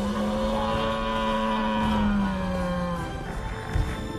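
Sound-designed Edmontosaurus call: one long, low call held steady for about three seconds, dipping slightly in pitch as it fades, over soundtrack music.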